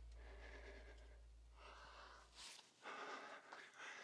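Near silence with a man's faint breaths into a clip-on microphone, a few short puffs in the second half. A low hum underneath fades and cuts off about two and a half seconds in.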